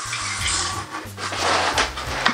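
Background music with two stretches of rubbing and scraping as a spirit level is handled against the wall and the shower tray.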